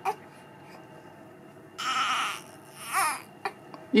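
Newborn baby fussing: a short strained cry about two seconds in, then a brief rising-and-falling whimpering cry a second later.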